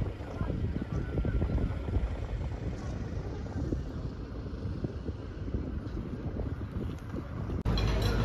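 Wind buffeting the microphone over the low rumble of a river ferry under way, gusty and uneven, cutting off abruptly near the end.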